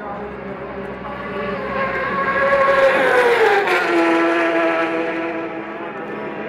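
Racing motorcycle engine revving up, then dropping in pitch as the throttle closes and settling to a steady idle, with crowd noise underneath.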